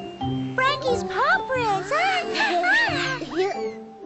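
Gentle background music with steady held notes. From about half a second in until near the end, high, squeaky cartoon voices make wordless sounds that glide up and down.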